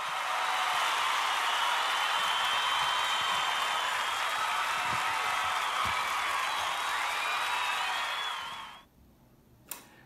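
A large crowd cheering and applauding, with a few whistles over it; it fades out near the end.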